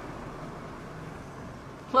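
Quiet outdoor background: a steady low hum with no distinct events.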